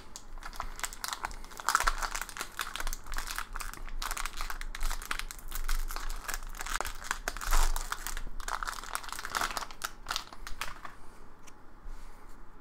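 Wrapper of a pack of Topps 2020 Series 1 baseball cards crinkling and tearing as it is peeled open by hand. The crackling comes in irregular clusters and dies away near the end as the cards come out.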